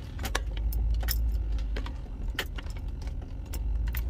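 Car cabin while driving: a steady low rumble with frequent light rattling clicks.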